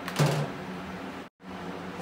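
A short knock of handling at the bench about a quarter second in, over a steady low workshop hum; the sound drops out completely for an instant about a second and a third in, at an edit.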